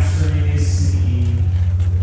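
A man's voice amplified through a microphone and PA in a large tent, over a steady low hum.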